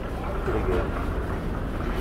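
Busy wholesale fish market ambience: a steady low rumble with faint, indistinct voices.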